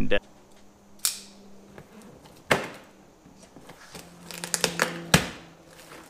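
Sharp clicks and knocks of a cardboard box being handled and its tape cut open with a utility knife: single ones about one and two and a half seconds in, a quick run of them near the end, and the loudest just after that. A faint steady hum lies underneath.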